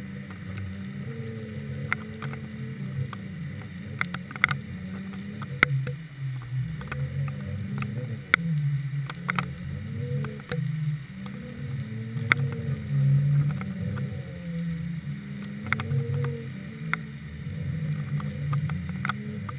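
Muffled underwater sound picked up by a GoPro in its waterproof housing on a deep-drop rig: a low hum that wavers up and down in pitch in slow swells, with scattered sharp clicks throughout.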